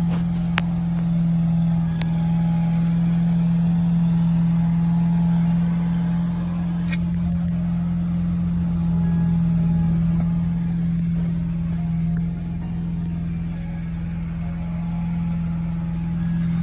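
Steady engine hum at a constant pitch, with an occasional faint click.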